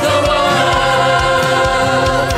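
A group of voices singing a Christian worship song with long held notes, backed by a band of guitars, bass guitar and hand percussion.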